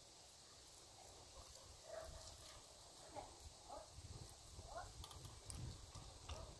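Near silence: faint outdoor quiet with a few soft, brief voice-like sounds and low thumps in the second half.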